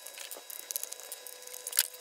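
Small screwdriver working screws out of a 3D-printed plastic case while the case is handled: scattered light clicks and scrapes of plastic, coming quicker near the end as the bottom cover comes off.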